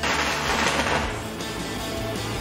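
A welder's arc on thin sheet steel, a hiss that starts abruptly and eases after about a second and a half, burning holes through the metal. Background music plays underneath.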